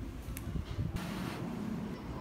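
Steady low background hum, with a light click about half a second in and a short rustle about a second in.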